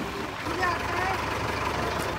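School bus engine running, a steady low rumble that sets in about half a second in as the bus pulls up and stands.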